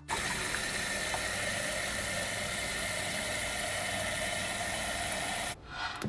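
Tap water running steadily into an electric kettle, stopping abruptly about five and a half seconds in.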